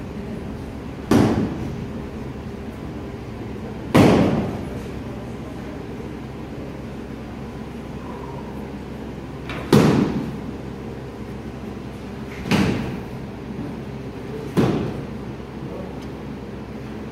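Five sharp blows of padded soft-kit weapons striking shield and armour during full-contact medieval combat sparring. The hits are spaced irregularly a few seconds apart, and each rings out briefly in the echo of a large hall.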